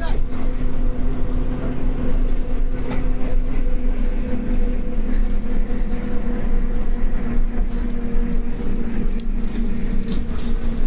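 Inside a moving city bus: a steady engine and road drone with a constant hum, and loose windows and fittings rattling in short, irregular bursts.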